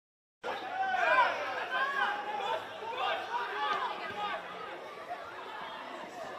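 Silence, then about half a second in the sound cuts in abruptly: several voices talking and calling out at once, the chatter and shouts of spectators and players around a football pitch.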